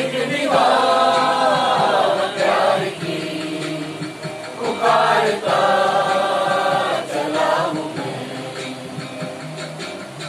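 A mixed group of amateur singers singing a Hindi film song in chorus, in two loud sung phrases, the first from about half a second to three seconds in and the second from about five to nearly eight seconds in, softer between and toward the end.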